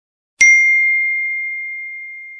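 A single bright ding from a phone message notification tone, about half a second in: one clear chime struck once, its high ring fading slowly.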